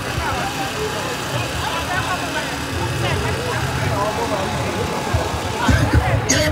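Crowd babble from a large gathering: many voices talking and calling out at once, none standing out, with a low rumble underneath that swells and fades.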